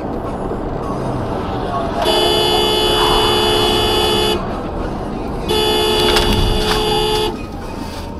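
Car horn sounding two long blasts, the first a couple of seconds long and the second, after a short gap, slightly shorter, over steady road noise heard inside a moving car.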